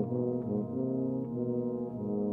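Brass band playing a concerto for tuba and brass band: held brass chords that move from one to the next in steps, at a fairly steady moderate level.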